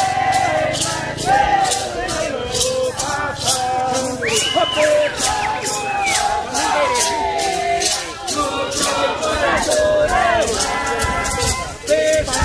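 A group of voices singing and calling out over a steady, evenly repeating rattle beat, accompanying a circle dance.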